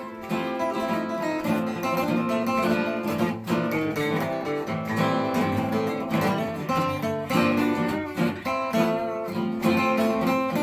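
Two acoustic guitars strummed together in an instrumental break, with steady rhythmic chords.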